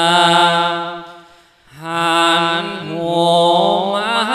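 A Thai Buddhist monk singing a lae sermon (melodic chanted preaching) into a handheld microphone: long held, wavering notes that fade out about a second and a half in, then the melody starts again.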